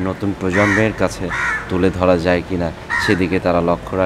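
A man talking in Bengali, with a crow cawing behind his voice.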